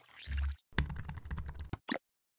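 Computer-keyboard typing sound effect: a quick run of key clicks lasting about a second, opened by a short swoosh with a low thump and closed by a single click.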